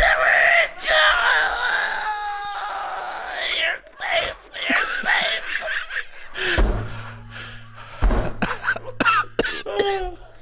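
Two men laughing helplessly, with strained, wailing, wheezing laughs and coughing. About two-thirds of the way through come two heavy thumps, a second and a half apart, like a fist pounding the desk.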